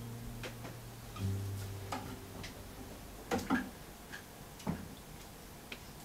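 Classical guitar with a few low notes left to ring and fade, then a quiet stretch of scattered light clicks and knocks, the loudest two close together about three and a half seconds in.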